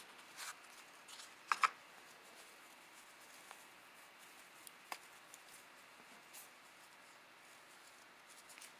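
Faint handling sounds as a small cardboard box and a cloth drawstring pouch are opened: soft rustling with a few light clicks, the loudest pair about one and a half seconds in.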